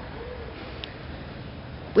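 Steady background hiss and low hum of the recording, with a brief soft hum from a person's voice just after the start and a faint click a little before the middle.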